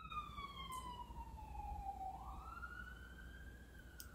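Ambulance siren wailing faintly: its pitch slides slowly down for about two seconds, then sweeps back up.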